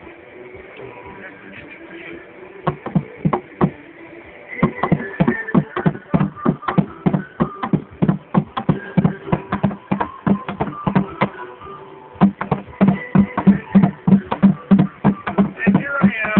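Drumming: a few scattered hits, then a fast steady beat that gets heavier and more regular in the second half.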